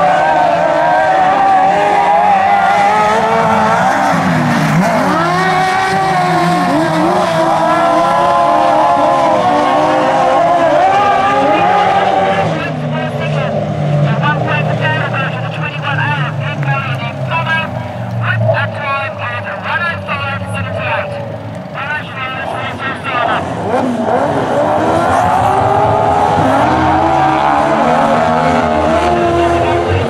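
Several speedway sidecar outfits racing, their engines revving up and falling away in pitch as they accelerate and back off through the corners.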